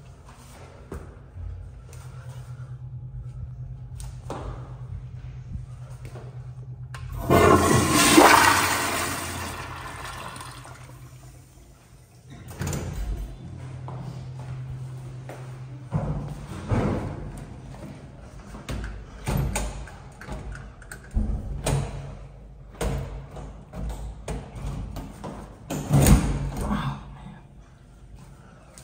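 Public restroom toilet flushing: a sudden loud rush of water about seven seconds in that fades over a few seconds, over a steady low hum. Later comes a string of sharp knocks and clatters from the stall door and its metal latch, the loudest near the end.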